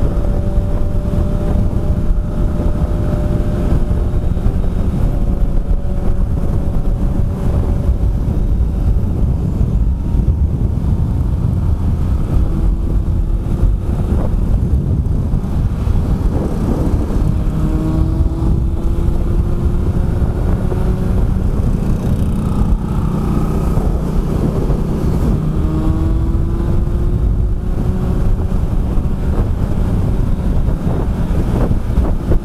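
Steady wind rush on a helmet-mounted microphone at highway speed, with the Kawasaki ZRX1100's inline-four engine running underneath. Engine notes climb in pitch a few times, around the middle and near the end.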